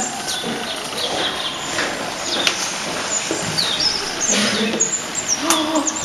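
Small birds chirping: short, high calls that rise and fall, scattered and more frequent in the second half, over a steady outdoor hiss. Two sharp clicks stand out, one about two and a half seconds in and one near the end.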